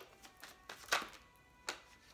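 A deck of tarot cards being handled in the hands: four short, sharp card taps and clicks, the loudest about a second in, over faint background music.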